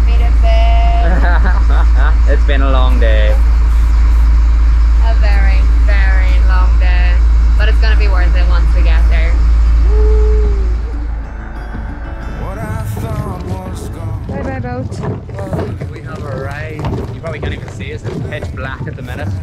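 A loud, low engine drone with people's voices over it, which drops away suddenly about ten seconds in, leaving a quieter, rougher rumble with short knocks.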